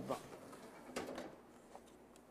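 Faint clicks and light knocks from a countertop electric oven being handled, over quiet room sound.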